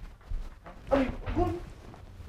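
Two short wordless voice sounds, about a second in and again half a second later.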